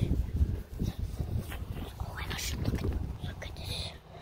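Rumbling and rustling of a phone's microphone being handled while the camera is swung around, with low, indistinct voices underneath.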